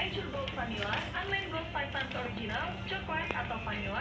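Light knocks of small packaged items being dropped into a child's plastic shopping basket, over faint indistinct voices and a steady low hum.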